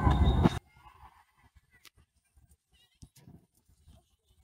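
A spectator's voice calling out over a noisy indoor field, cut off abruptly about half a second in. Then near silence with a few faint ticks.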